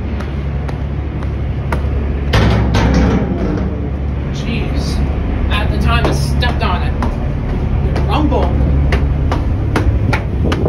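A ferry's engines running with a steady low drone, with footsteps clicking on the deck every second or so as someone boards, and other people's voices talking.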